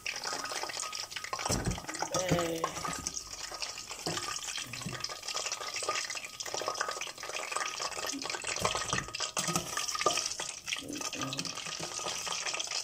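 Hot oil sizzling and crackling steadily in a pot as akara bean fritters fry, with a few knocks of a metal slotted spoon against the pot about a second and a half in.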